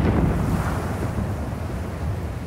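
Dust storm sound effect from an animated film: rushing wind over a deep low rumble, easing off slowly.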